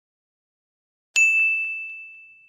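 Silent at first, then about a second in a single bright, high ding, like a small bell or chime sound effect, struck once and ringing on as it slowly fades.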